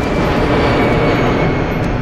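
A loud, steady rushing rumble from a film trailer's soundtrack, with faint thin high tones over it.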